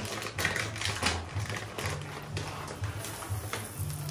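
Whole coffee beans rattling in a plastic bag and pouring onto a plate, a fast patter of small clicks.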